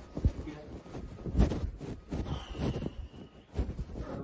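Handling noise from the recording phone, rubbing and bumping against fabric, with two dull thumps, the louder one about a second and a half in, and a faint thin high tone briefly in the middle.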